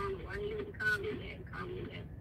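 A faint, high-pitched voice in short phrases, played back from a recording.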